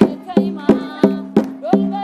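Dance music with a steady drumbeat, about three strikes a second, over held low keyboard-like tones, with a voice singing over it.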